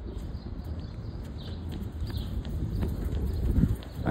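Footsteps on a concrete station platform, a few faint knocks over a steady low rumble that grows a little louder toward the end.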